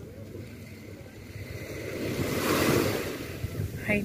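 Small sea waves washing onto a sandy shore, one wash of surf swelling to its loudest a little past halfway and then easing off, with wind rumbling on the microphone underneath.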